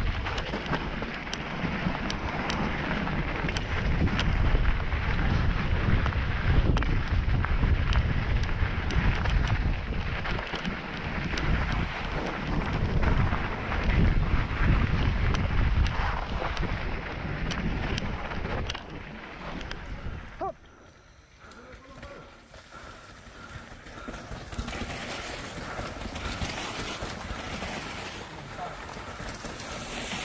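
Wind rushing over the microphone, with rumble and rattling from a downhill mountain bike running fast over a rough dirt trail. About twenty seconds in the sound drops away suddenly, and a quieter, hissier noise follows.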